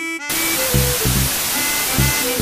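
Outro jingle: a few short musical notes and low beats under a loud, steady hiss of TV static that sets in about a quarter second in.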